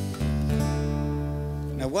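Guitar chord strummed once and left ringing, fading slowly; a man starts speaking near the end.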